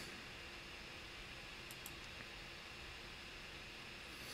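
Quiet room tone, a steady low hiss, with a few faint computer-mouse clicks near the middle as a structure is selected in an anatomy program.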